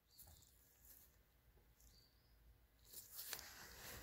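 Near silence, with a few faint small ticks and a faint rustle of handling noise near the end.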